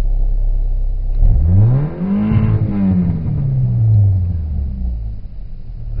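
Mitsubishi Eclipse's 1.8-litre 4G37 four-cylinder engine idling, then revved once about a second in: the pitch climbs quickly and falls slowly back to idle, heard from inside the cabin.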